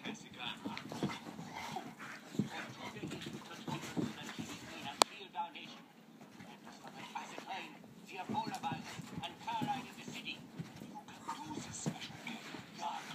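A pit bull and a boxer play fighting: irregular short bursts of dog noise with some whining, and one sharp click about five seconds in, the loudest sound.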